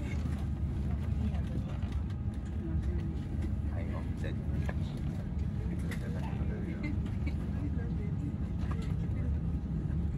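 Airliner cabin noise inside an Airbus A350-900 moving slowly on the ground: a steady low rumble, with faint passenger voices.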